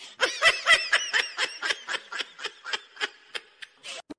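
A person laughing in rapid, high-pitched bursts, about four to five a second, fading in the second half.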